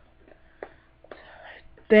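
A few faint computer keyboard clicks and a soft breath, over a faint steady hum.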